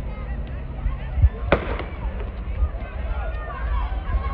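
A starter's pistol fires once, a sharp crack about a second and a half in, starting a sprint race.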